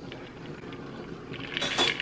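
Quiet kitchen room tone with a few faint ticks, then a short clatter of small hard knocks near the end.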